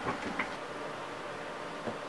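Quiet room tone: a steady faint hum with a couple of faint brief knocks, one just after the start and one near the end.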